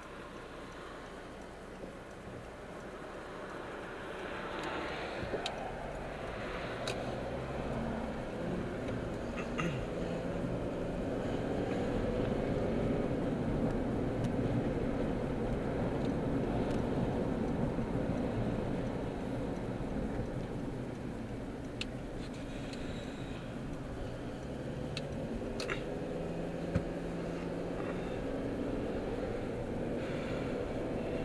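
Car engine and road noise heard inside the cabin as the car pulls out and picks up speed. It grows louder over the first dozen seconds, then holds fairly steady at cruising speed, with a few short sharp clicks.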